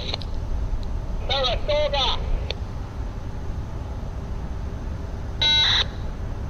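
Railroad scanner radio: a brief snatch of a voice about a second in, then a short steady beep near the end. A low rumble runs underneath.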